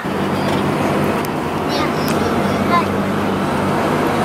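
Road vehicle cruising at speed, heard from inside the cabin: a steady rush of road and wind noise over a low engine hum.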